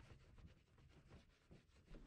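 Near silence: faint room tone in a pause between spoken lines.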